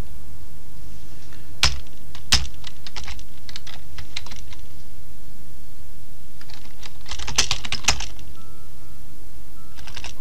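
Computer keyboard being typed on in short runs of keystrokes. Two louder single strokes come about one and a half to two and a half seconds in, then a quick run of keys, and another run near the three-quarter mark.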